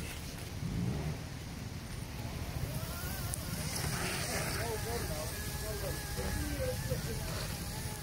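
Steady low rumble of wind noise on the microphone, with faint wavering tones over it from about two and a half seconds in.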